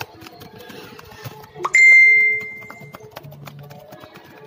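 A single bright bell-like ding about two seconds in, ringing away over about a second, just after a short rising swoop. Under it are faint music and small clicks.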